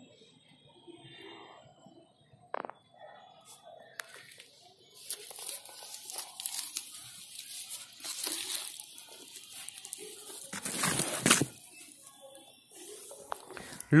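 A woven plastic sack being handled and pulled open, its fabric rustling and crinkling in uneven bouts, loudest about eleven seconds in. It is quiet for the first few seconds apart from a single click.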